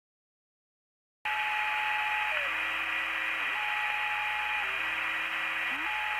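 Electronic song intro: a loud steady radio-static hiss begins after about a second of silence. Under it, a slow phrase of held electronic tones steps downward in pitch and repeats.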